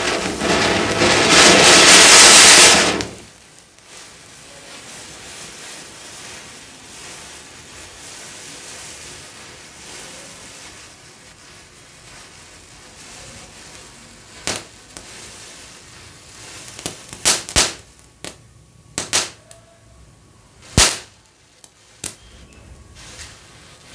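A Diwali fountain firecracker hisses loudly for about three seconds as it sprays sparks. A burning matchstick chain follows with a soft, steady hiss. In the last eight seconds come about eight sharp firecracker bangs, some in quick pairs.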